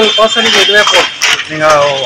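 A man talking, with a steady high-pitched tone behind his voice that stops just after he finishes.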